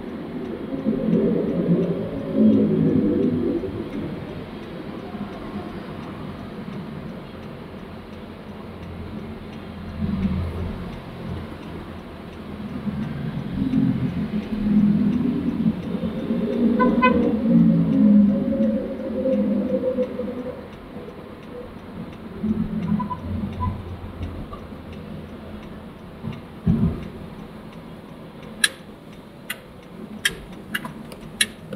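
Road and engine noise heard from inside a car's cabin while driving in city traffic, swelling louder several times as motorcycles and trucks pass close by. Near the end comes a run of evenly spaced sharp clicks.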